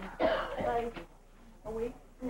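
A person clearing their throat and coughing in the first second, with a shorter vocal sound near the end.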